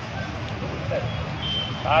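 A steady low rumble, like a running vehicle engine, under faint voices of people talking nearby; a man's voice starts right at the end.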